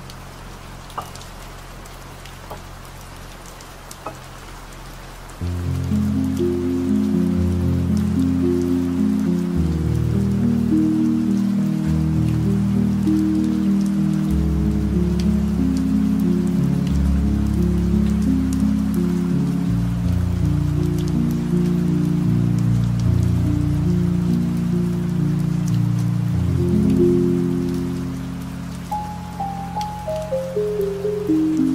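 Steady rain with scattered single drops. About five seconds in, loud, deep ambient music swells in over it, low held chords shifting about once a second. It fades near the end, where a few descending notes follow.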